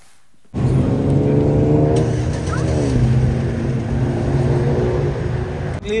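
Road traffic: a motor vehicle's engine passing close by, starting abruptly about half a second in, its steady note dropping in pitch about halfway through.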